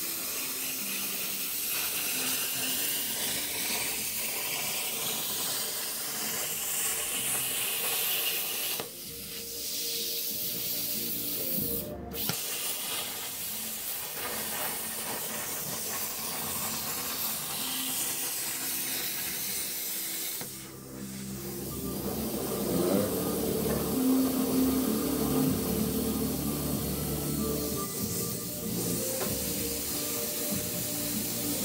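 Plasma cutter arc hissing as it cuts through sheet steel, its level dipping briefly twice, about nine seconds in and again about twenty-one seconds in.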